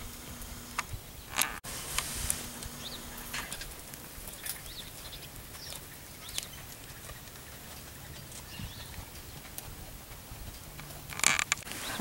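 Horses moving about in a dirt corral: scattered soft hoof steps and shuffles, with a few short noisy bursts, the loudest about a second before the end.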